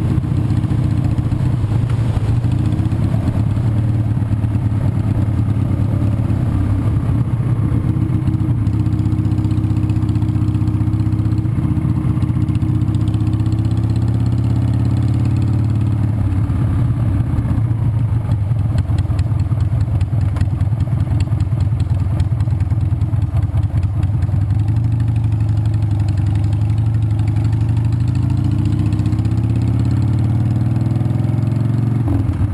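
Motorcycle engine running steadily under way, heard from the bike itself. Its note rises and falls gently a few times as the speed changes.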